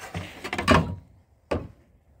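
Handling noise: a rustling scrape lasting about a second, then a single sharp click about one and a half seconds in.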